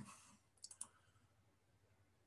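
Near silence with a few faint clicks about half a second in, from the computer being worked during the on-screen video review.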